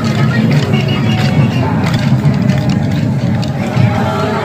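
Festival procession din: music mixed with many voices of the crowd and participants, with scattered sharp clicks.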